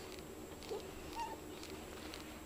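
A dog whimpering: two short, high whines about half a second apart, the second higher and held a moment longer.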